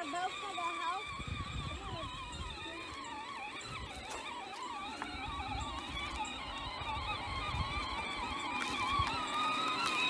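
Peg Perego Case IH Magnum 12-volt ride-on toy tractor driving across a lawn in first gear: a continuous electric motor and gearbox whine that wavers in pitch, with a low rumble through most of it.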